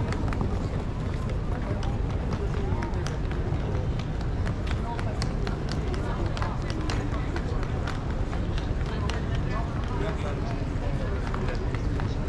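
Hard wheels of two rolling suitcases rumbling steadily over stone paving, with many short clicks and knocks from the wheels and footsteps; people talk faintly in the background.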